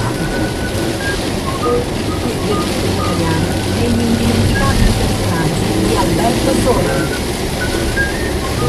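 Car cabin noise while driving on a wet road: a steady engine and tyre rumble with hiss, and a car radio playing faint voices and music underneath.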